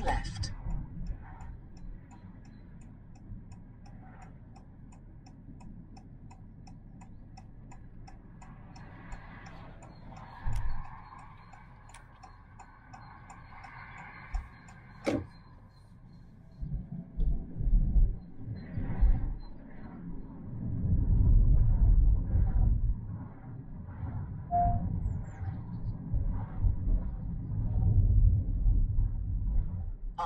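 Cabin noise of a car being driven: a low rumble that is fairly quiet at first, then grows louder and uneven from about halfway through.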